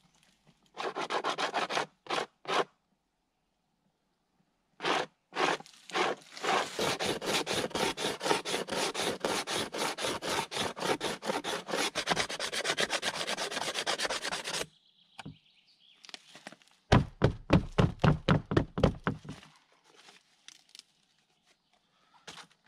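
A hand scraper working fast back and forth over a beaver hide stretched on a wooden board, first in short bursts and then in a long run of quick, even strokes. Near the end comes a shorter, louder burst of heavier strokes with a deeper, bumping sound.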